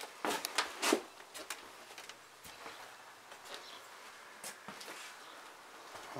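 Footsteps and scuffs on a debris-strewn tile floor, with a cluster of sharp clicks in the first second, then only faint scattered ticks over quiet room noise.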